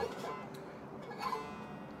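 Mastertone banjo strings ringing faintly in a quiet pause, with a brief faint sound a little past one second in.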